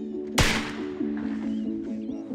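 A single rifle shot from a scoped CZ 600 bolt-action rifle fired from a bench rest, about half a second in, a sharp crack that dies away quickly, heard under background music.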